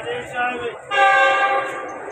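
Train horn sounding one long, steady blast that starts about a second in.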